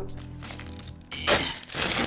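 Plastic packaging crinkling and crackling in two short bursts, the first about a second in and a longer one near the end, with background music underneath.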